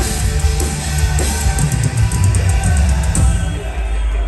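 Live metalcore band playing at full volume: pounding drums with rapid cymbal hits over heavy distorted guitar. Near the end the cymbals stop and a low chord rings on.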